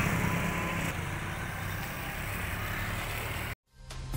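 Road vehicle engines running, a steady low hum with a haze of traffic noise. It cuts off suddenly about three and a half seconds in.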